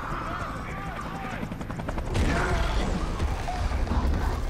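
Film sound design: a deep, steady rumble under short, arching chirps and clicks. It gets louder with a sudden swell a little after two seconds in.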